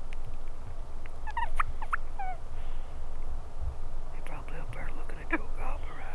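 Merriam's wild turkey gobbling: a short burst of calls about a second in, then a longer gobble from about four seconds in.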